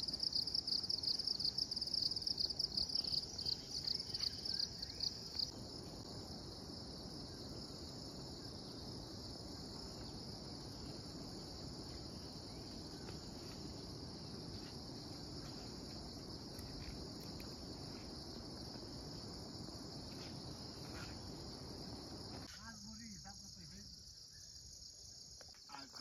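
Insects calling in a high-pitched chorus: for the first five seconds or so a louder, rapidly pulsing trill, which then settles into an even, quieter drone.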